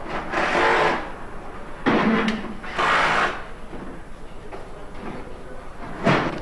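Car assembly-line noise: three short hissing bursts, about half a second each and about a second apart, over a steady workshop hum.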